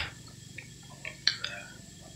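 Quiet pause with a few faint short ticks about a second in, and no motor running.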